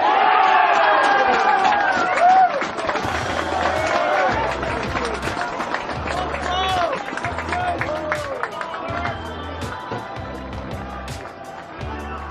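Excited shouting and cheering as a football goal goes in. From about three seconds in, music with a pulsing beat sounds beneath it and runs on.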